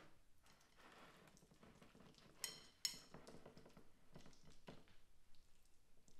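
Near silence with faint soft squishing and scraping of a silicone spatula pressing and smoothing chopped vegetable salad into a mound in a dish. Two light clinks, under half a second apart, sound a little before halfway.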